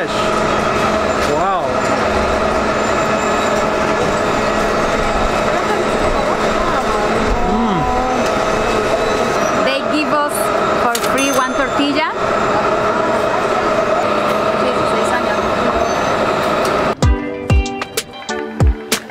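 Busy street soundscape: a crowd of voices, with music of held notes playing. About a second before the end it cuts abruptly to a rhythmic music track.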